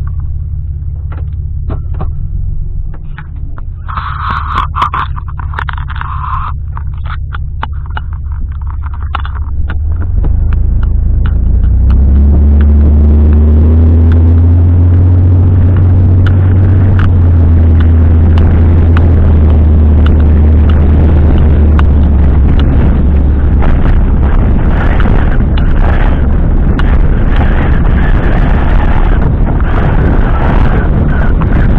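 Pickup truck driving, heard from inside the cab: a steady low engine hum with road and wind noise. About ten seconds in the truck speeds up, and the engine and road noise grow much louder, with a faint rising engine tone.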